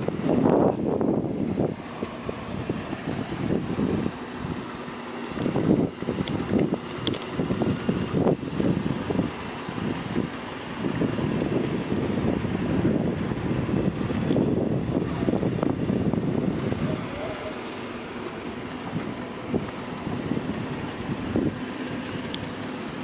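Wind buffeting the microphone in uneven gusts: a low rumble that swells and fades every second or two.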